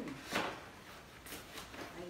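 Cardboard box being opened by hand: a short scrape of the flaps about a third of a second in, then fainter rustling of the cardboard.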